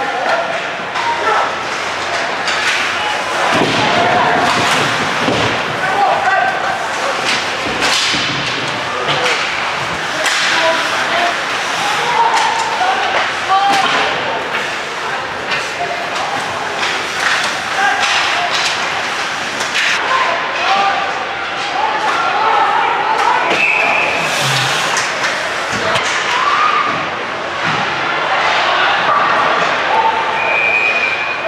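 Ice hockey play at the rink: repeated thumps and slams of the puck and players against the boards and glass, with clatter of sticks and scattered shouts from players and crowd.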